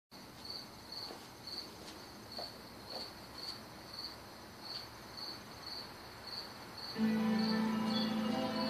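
Cricket chirping in a steady rhythm, about two short high chirps a second. Music comes in about seven seconds in and becomes the loudest sound.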